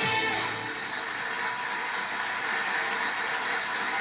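The song's last sung note and backing music end within the first second, followed by steady audience applause.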